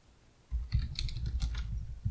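Typing on a computer keyboard: a quick run of keystrokes starting about half a second in, after a brief near-silent pause.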